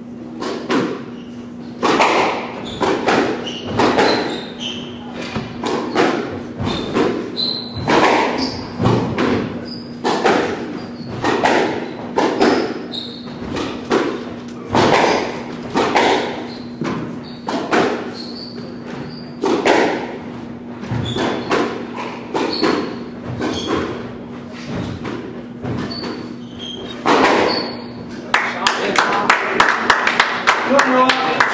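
Squash rally: the ball being hit by rackets and smacking off the court walls, a string of sharp, echoing knocks at irregular intervals of about half a second to a second and a half. Near the end the knocks stop and louder spectator noise takes over.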